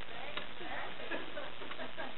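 Faint, indistinct voices murmuring in the room over a steady background hiss, with one light click about half a second in.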